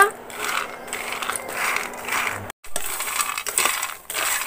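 Peanuts dry-roasting in a pan, stirred with a wooden spatula so that they rattle and scrape against the pan in repeated strokes. The sound breaks off for a moment a little past halfway, then the stirring goes on.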